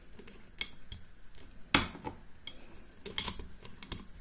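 A series of sharp metal clicks and clacks as a euro profile lock cylinder is handled, freed from a metal clamp and set down, the loudest a little under two seconds in.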